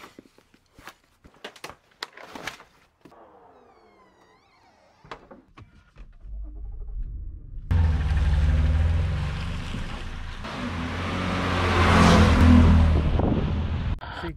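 Hiking-boot laces being pulled tight through the metal eyelets and hooks: a run of short rustles and clicks. Then a car's engine and tyre noise come in, starting about six seconds in, jumping up suddenly near eight seconds and growing loudest about twelve seconds in.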